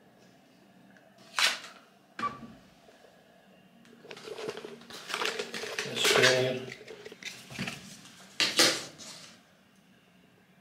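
Knocks and clicks in a small metal lift car as a key card is tapped on the reader and the buttons and camera are handled. The loudest knocks come about a second and a half in and near the end, with a short beep about two seconds in and a longer rustling stretch in the middle.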